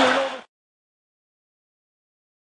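A commentator's last word over arena noise cuts off about half a second in, followed by dead silence.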